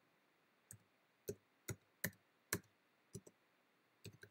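Keystrokes on a computer keyboard as numbers are typed in: about eight separate clicks at an uneven, unhurried pace.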